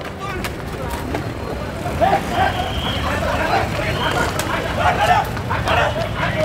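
Voices shouting in short, raised calls over a steady low street rumble, starting about two seconds in.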